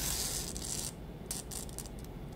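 Narrow ribbon rustling and crinkling as fingers fold and press it into a petal. A longer rustle runs through the first second, then a few short crinkles about a second and a half in.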